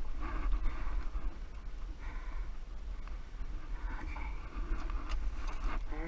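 John Deere 1023E compact tractor's three-cylinder diesel engine idling as a steady low rumble, with a few light metallic clicks near the end as the hitch pins are handled.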